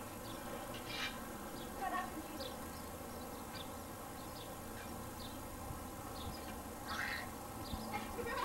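Faint outdoor background: scattered short, high chirps come and go over a low steady hum, with a slightly louder burst about seven seconds in.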